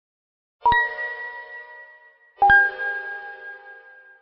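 Two metallic chime dings, about two seconds apart, as a logo-sting sound effect. Each is a sharp strike that rings on and fades, and the second is a little lower in pitch than the first.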